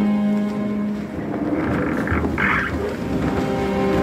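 Ship's bow breaking through pack ice, a rough crunching and grinding of ice against the hull with a low rumble, loudest around two to three seconds in, under background music with sustained chords.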